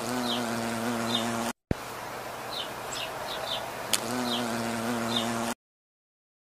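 Carpenter bee buzzing in a steady, low hum, which stops after about a second and a half and starts again about four seconds in, with small birds chirping faintly in the background. The sound cuts off abruptly near the end.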